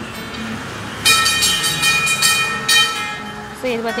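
A vehicle horn sounds for about two seconds, starting about a second in: a steady tone with a fast pulsing buzz over it.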